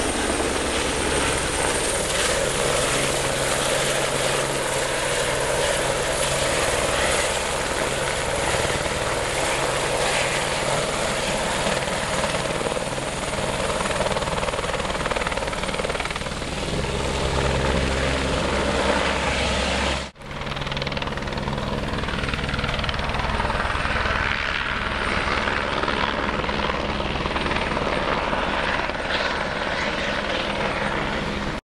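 Helicopter running steadily and loud, with the rapid, even beat of its rotor blades. The sound cuts out abruptly for a moment about two-thirds of the way through, then resumes unchanged.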